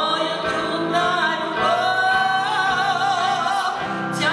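A woman singing live with acoustic guitar accompaniment. Her voice rises into a long held note with wide vibrato over the second half.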